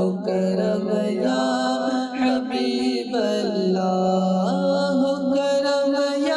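A man singing a devotional naat into a microphone, with long held notes that slide and turn in ornamented runs over a steady low drone.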